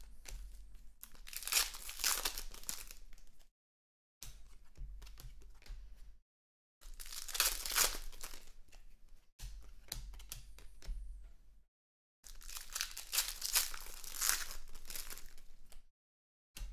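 Foil trading-card pack wrappers being torn open and crinkled as cards are handled, in three loud spells of rustling with sudden dead-silent gaps between them.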